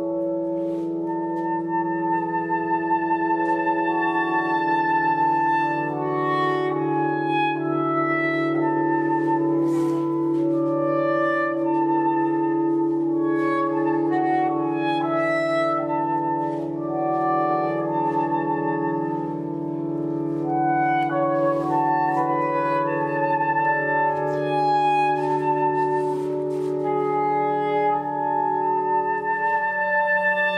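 Soprano saxophone playing a slow melody of long held notes over a steady low drone.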